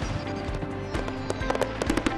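Aerial fireworks bursting: a string of sharp, irregularly spaced bangs and crackles over background music.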